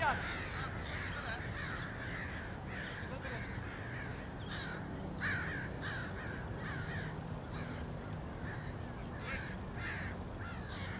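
A bird calling over and over in short calls, two or three a second, over a steady low background hum.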